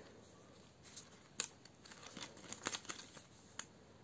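Faint rustling and crinkling of plastic ring-binder sleeves being handled and turned, with a few light clicks scattered through.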